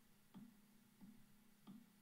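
Near silence with three faint, short clicks about two-thirds of a second apart: a computer mouse being clicked while painting with a photo-editing brush. A faint low hum lies underneath.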